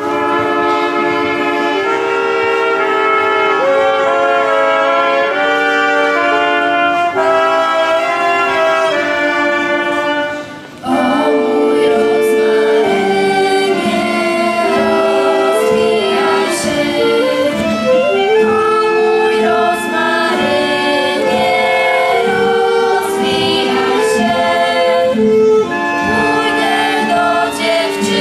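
A school choir singing a Polish legion song to acoustic guitar accompaniment, with a short break between phrases about eleven seconds in.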